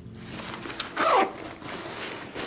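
A zipper on a ripstop nylon duffel bag is pulled, and the fabric rustles as the bag is handled. A short downward-sliding pitched sound comes about a second in.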